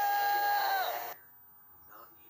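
A high voice holds one long note that sags in pitch and breaks off about a second in, followed by near silence.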